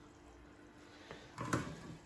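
Near quiet, then a brief soft rustle with a light tick about one and a half seconds in: dry shredded kataifi dough being picked up by hand.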